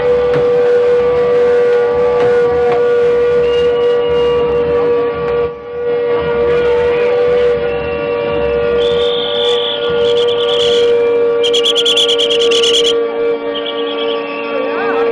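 One long, steady held note that never breaks, over crowd noise. From about nine seconds in come shrill whistle blasts, and near the end a fast trilling blast.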